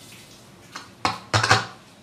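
A short run of four sharp, clattering knocks about a second in, the last two the loudest, like small hard objects being handled or knocked together.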